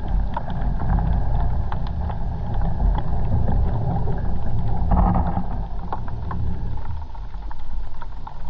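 Underwater sound picked up by a camera in its waterproof housing as a diver swims over seagrass: a steady low rumble of moving water with many short scattered clicks and crackles, swelling briefly about five seconds in.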